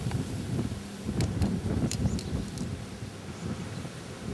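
Wind rumbling on the microphone, with a few sharp clicks about a second to two and a half seconds in.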